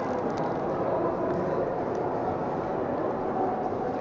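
Steady ambient noise of a busy railway station concourse, an even background hum with no single sound standing out.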